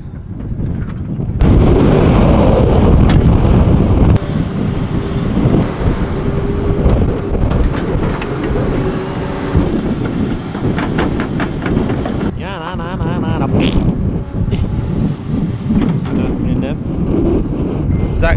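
Strong wind buffeting the microphone, starting abruptly about a second and a half in, over the running engine of a Volvo tracked excavator.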